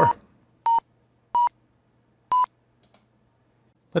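Simulated FlySight audible vertical-speed tones: three short electronic beeps near 1 kHz, spaced about a second apart with the gap slightly widening. Their pitch and repetition rate signal the skydiver's vertical speed: higher and faster as the speed rises, slower when it changes little.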